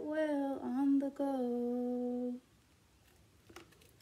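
A woman singing without accompaniment, ending the last line of a children's song on one long held note that stops about two and a half seconds in. Near silence follows, with a faint tick.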